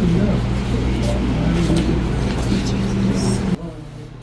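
People's voices over a low, steady hum, cutting off abruptly about three and a half seconds in.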